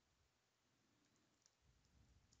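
Near silence, with a few faint, sharp computer keyboard key clicks from typing in the second half.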